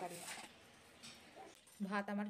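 A woman's voice trailing off, then faint room noise, with speech starting again near the end.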